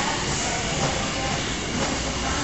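Steady noise of a gym room, a continuous rumble and hiss, with faint voices in the background.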